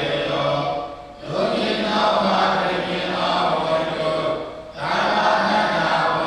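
A group of young Buddhist monks chanting Pali paritta verses together in unison, in a steady drone-like recitation. The chant breaks off briefly twice, about a second in and again just before five seconds, then resumes.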